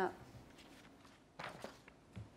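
The tail of a woman's spoken word, then quiet room tone with a brief cluster of soft handling noises about a second and a half in.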